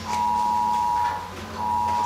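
A steady electronic tone, two pitches sounding together, in long beeps of about a second and a half with short breaks between them. It cuts into the seminar as an unexplained disturbance.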